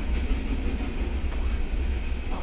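Steady low rumble of background room noise with no distinct events.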